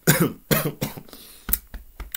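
A man coughing twice in quick succession, about half a second apart, followed by fainter throat sounds.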